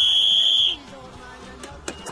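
Electronic beep: one loud, steady, high-pitched tone lasting about a second that cuts off abruptly, the sound signal cueing the ball-launching machine to fire. A single sharp thump follows near the end.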